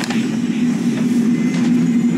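A steady, loud low hum with a rumbling haze beneath it, unchanged throughout, with a few faint ticks.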